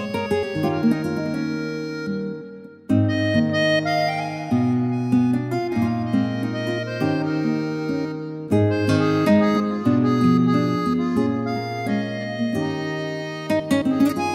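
Yamaha Genos arranger workstation playing a freely arranged instrumental: a melody over an accompaniment and a moving bass line, with a brief break about three seconds in before the music resumes.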